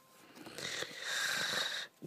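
A person's long, breathy, wheezy breath, lasting about a second and a half.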